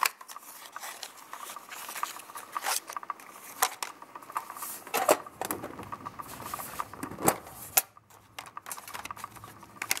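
Hands handling small cardboard boxes of ink cartridges inside a metal tin: rustling with irregular sharp clicks and knocks of cardboard and metal, the loudest about five seconds in and again around seven seconds.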